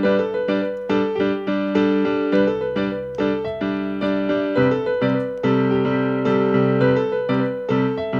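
Electric stage keyboard on a piano sound, playing a steady rhythm of repeated chords, several a second, as the instrumental lead-in to a worship song.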